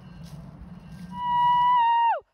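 Faint outdoor background noise, then about a second in a loud, steady electronic tone with a clear pitch comes in and slides sharply down in pitch at the very end.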